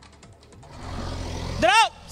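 Diesel engine of a JCB backhoe loader working under load, swelling into a rising rumble mixed with the noise of sheet-metal roofing being torn down. A short voice call comes near the end.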